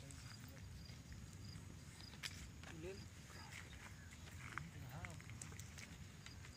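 Quiet outdoor background: a short high chirp repeats about twice a second over a low rumble. Faint distant voices come in around the middle and near the end, with a few light clicks.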